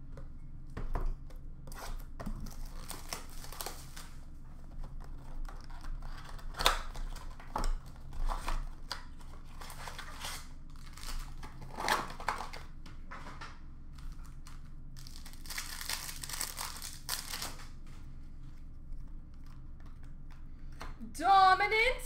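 Plastic wrapping and card packs of a Panini Prizm basketball blaster box crinkling and tearing as it is opened, with scattered short rustles and clicks of cardboard and cards. A longer, denser crackle of tearing comes about 16 seconds in, and a man's voice starts just before the end.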